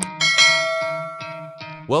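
A bell-chime sound effect, the notification-bell click of a subscribe-button animation, rings once and fades over about a second and a half, over background music.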